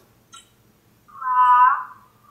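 A child's voice heard through a laptop speaker over a webcam call: one short drawn-out word about halfway through, thin and narrow-band, with a small click before it.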